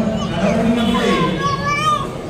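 A man speaking into a handheld microphone, amplified through a PA, with other higher-pitched voices overlapping in the background.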